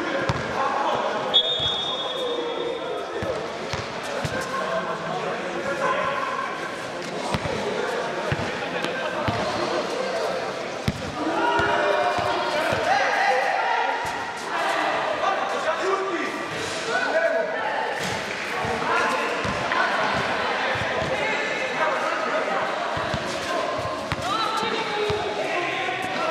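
Basketball bouncing on a hard indoor court as players dribble, with repeated short thuds, amid players' voices calling out.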